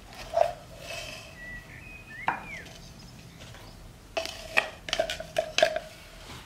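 Clear plastic chopper bowl knocked and scraped against a wooden cutting board to free cocoa cookie dough, with single knocks early on and a quick cluster of sharp knocks in the last two seconds, each with a short hollow ring.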